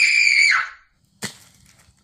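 A short, very high-pitched scream that drops in pitch as it ends, followed about a second later by a single sharp crack.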